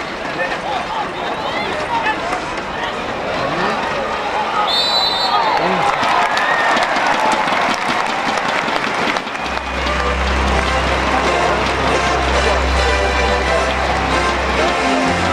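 Stadium crowd noise of many voices shouting and cheering at a field hockey match, then background music with a steady bass line that comes in about nine seconds in.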